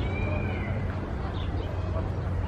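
A bird's drawn-out, slightly arched high whistled note near the start, then a few brief high chirps about a second and a half in, over a steady low rumble.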